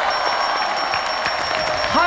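Studio audience applauding, with a steady high-pitched electronic tone over it.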